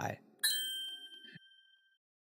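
A bright, bell-like ding sound effect, struck once about half a second in and ringing on as it slowly fades.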